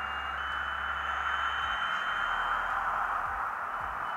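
Hornby HST model's HM7000 sound decoder playing the diesel power-car sound as the consist pulls away under throttle: a steady hiss of engine noise with a steady high whine that steps up slightly just after the start and fades near the end.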